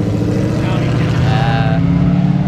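Ford Mustang GT's 5.0-litre V8 exhaust as the car pulls away, the engine note holding steady.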